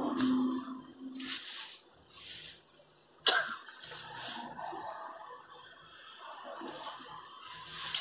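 Stifled, breathy laughter from two people in a car cabin: a string of short puffs and snorts of breath at irregular intervals, the sharpest about three seconds in.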